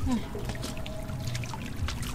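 Irregular small splashes and trickling water as stranded catfish flap in a shallow muddy puddle.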